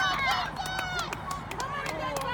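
Several voices of spectators and players shouting and calling out across a football pitch in short, overlapping cries, with a few sharp clicks in between.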